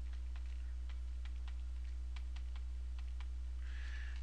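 Light, irregular clicking at a computer, a few clicks a second, over a steady low electrical hum.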